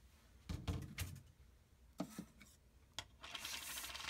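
Faint handling noises of paper-crafting supplies: a few light knocks and clicks as things are set down, then a soft rustle near the end.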